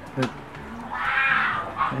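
A puppy's brief high-pitched whine, about a second in, as its belly is rubbed.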